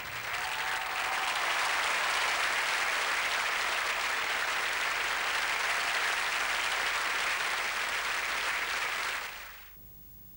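Large theatre audience applauding steadily at the close of a stage production number, fading out about nine seconds in.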